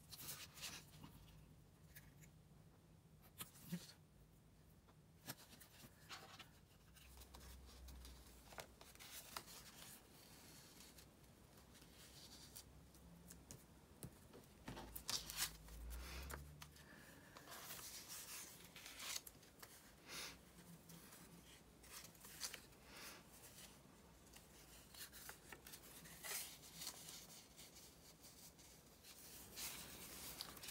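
Quiet snips of small craft scissors cutting around a paper cutout, with paper rustling and rubbing as the piece is handled.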